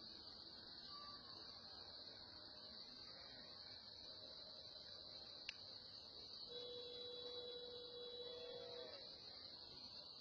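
Faint, steady high-pitched chirring of crickets in the vegetation, with a single sharp click about halfway through and a faint held tone for a few seconds near the end.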